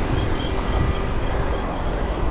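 Steady rumble of wind buffeting the microphone, with tyre and road noise from a bicycle being ridden at speed.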